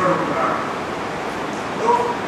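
A man's voice making brief, drawn-out sounds between sentences, over a steady hiss from the recording.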